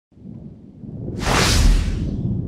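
Logo-intro sound effect: a low rumble that swells into a loud whoosh about a second in.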